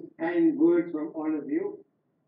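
A man speaking over a video call, stopping shortly before the end.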